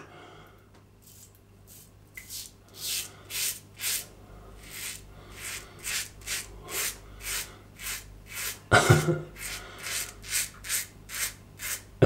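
Executive Shaving Claymore safety razor with a Feather Pro Guard blade scraping stubble through shaving lather in short, regular strokes, about two a second, starting a couple of seconds in. A short laugh comes about three-quarters of the way through.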